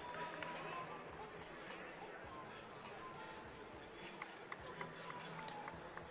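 Faint ambience of a basketball venue, with crowd chatter and music over the PA. A few short squeaks and taps are scattered through it.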